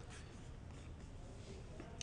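A few faint taps and clicks of a computer keyboard and mouse over low room tone, picked up at a distance by a room microphone.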